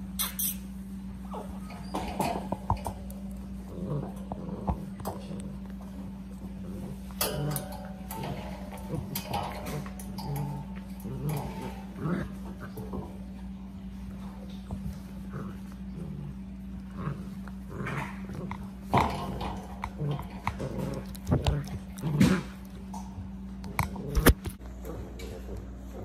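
Basset hound puppies play-fighting, with many short growls and whimpers scattered irregularly throughout, over a steady low hum.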